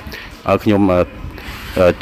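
Thin plastic bags rustling and crinkling as they are handled and filled, between short stretches of talk.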